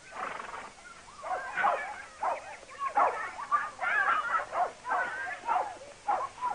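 Short, repeated animal calls coming at an uneven pace throughout, some high and wavering.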